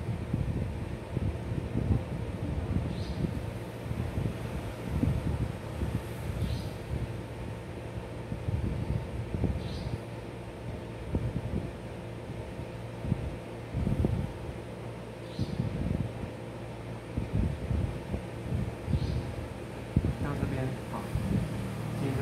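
Steady machine hum, of the kind a fan or air conditioning makes, under irregular low rumbling noise; indistinct voices come in near the end.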